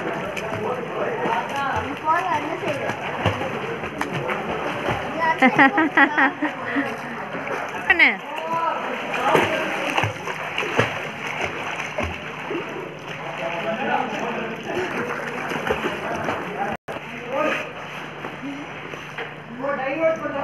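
Water splashing from a child swimming front crawl in a pool, with people's voices and calls heard throughout.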